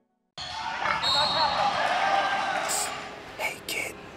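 Ambient sound of a busy gym in a large hall, cutting in suddenly about a third of a second in: a murmur of voices and equipment noise, with a few sharp thuds near the end.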